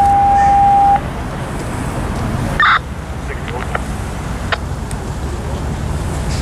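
Police radio alert tone: one steady, loud beep lasting about a second, then a short, higher chirp a couple of seconds later, over a steady hum of street traffic.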